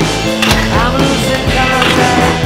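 Music soundtrack playing, over which a BMX bike's tyres hit and roll along a concrete wall during a wallride, with a sharp impact about half a second in.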